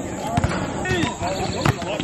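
A basketball bouncing a few times on an outdoor hard court, with players' voices and calls around it.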